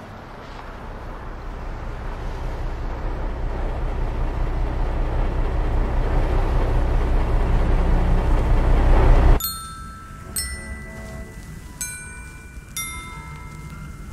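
A vehicle's engine and road rumble swelling steadily louder for about nine seconds, then cut off abruptly. Glockenspiel notes follow, struck singly about a second apart, four times.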